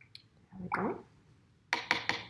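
Watercolour brush rinsed in a plastic cup of water: a couple of faint clicks at first, then a quick cluster of splashy taps near the end.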